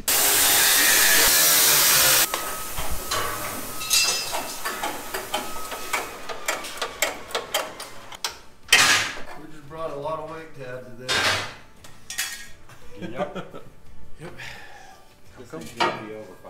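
Metal parts clanking and knocking as a car frame is worked on by hand, with a few sharp knocks. This follows a loud, steady rush of noise in the first two seconds that cuts off abruptly.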